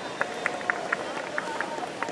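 Spectators' voices calling out in reaction to a penalty kick, one voice held in a long call, with several short sharp sounds scattered through.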